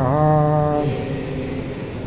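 A man chanting a line of a Sanskrit verse, holding a steady sung note for about a second before it drops away; fainter voices carry the chant on after that.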